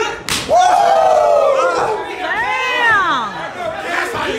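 An open-hand chop smacks across a wrestler's bare chest, and spectators answer with a long falling "woooo", followed by a second rising-and-falling "woo" about two and a half seconds in.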